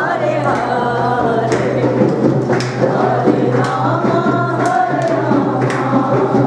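A group of voices singing a devotional song in chorus, with sharp percussive hits keeping time and a steady low hum underneath.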